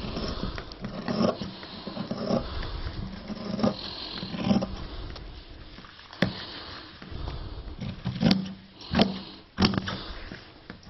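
Scissors cutting through a piece of denim, one snip after another, with several sharp clicks in the second half.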